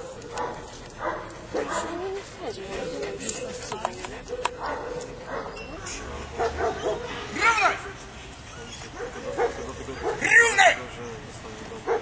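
German shepherd police dog giving short yelping barks, the two loudest about seven and ten seconds in, between a handler's shouted commands.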